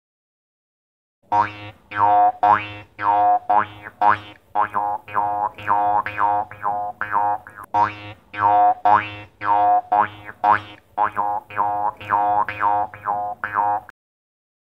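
Morsing, a steel jaw harp, played in a fast rhythmic pattern starting about a second in. Each pluck twangs over one steady low drone, with its overtones sweeping up as the mouth shape changes, about two to three plucks a second.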